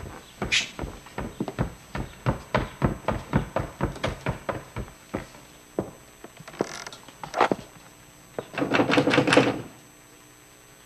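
Heavy boot footsteps on wooden stairs and floorboards, a fast run of thuds about four a second, then a few slower steps. A little before the end comes a rattling scrape, as of a door bolt being drawn.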